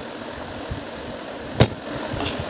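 Someone drinking from a glass over a steady low mechanical hum, with one sharp click about one and a half seconds in.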